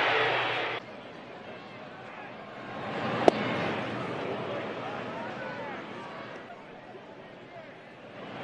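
Ballpark crowd murmur with a single sharp pop of a pitch landing in the catcher's mitt about three seconds in. A louder stretch of crowd and commentary noise at the start is cut off abruptly under a second in.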